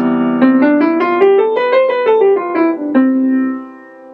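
Piano playing a C major seventh chord, held, while a C major (Ionian) scale runs up an octave and back down over it, about a dozen notes, then dies away near the end.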